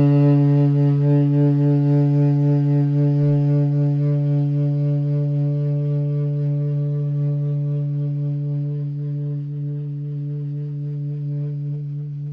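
Tenor saxophone holding one long low note, slowly fading, with a slight waver in loudness.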